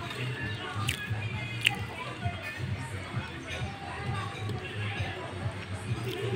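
Background music with a steady bass beat. A fork clicks sharply against a plate twice, about one and two seconds in.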